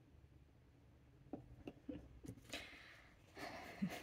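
Faint, light clicks and taps, about five over a second and a half, followed by soft handling noise, as a fountain pen is filled from a glass ink bottle.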